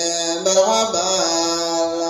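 A male voice chanting a qasida, an Islamic devotional song in praise of the Prophet, into a microphone. He holds long, steady notes, with one step in pitch about half a second in.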